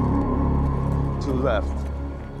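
Low, sustained, ominous drone of a horror film score, with a brief voice rising in pitch near the end.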